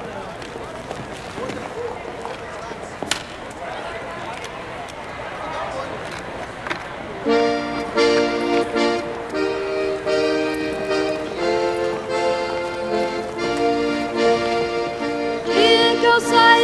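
An accordion starts playing about seven seconds in: held chords that change every second or so, after a stretch of murmuring background voices and noise.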